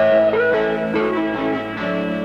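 Instrumental music led by a guitar, with some melody notes gliding in pitch.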